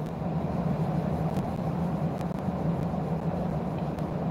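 Steady low hum of a car idling, heard from inside the cabin, with a few faint clicks.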